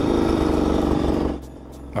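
Bultaco Alpina trials motorcycle's single-cylinder two-stroke engine running under way, cutting off suddenly about a second and a half in.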